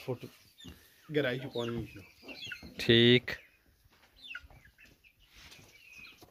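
Chickens clucking in two short bursts, about a second in and about three seconds in, with a few faint bird chirps between them.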